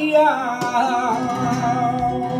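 Flamenco cante por bulerías por soleá: a male singer holds a long, melismatic sung line that wavers and bends in pitch over acoustic flamenco guitar accompaniment. A sharp guitar strum comes just over half a second in.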